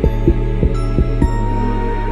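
Instrumental ambient hip-hop beat: deep 808-style bass-drum hits, five in quick succession in the first second and a half, over sustained airy synth pads and a held high synth note.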